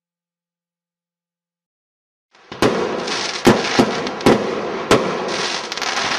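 Fireworks: after about two seconds of silence, a dense crackle sets in, with five sharp bangs over the next two and a half seconds.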